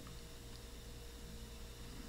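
Faint steady hiss with a low electrical hum and a thin steady tone: the recording's background noise floor.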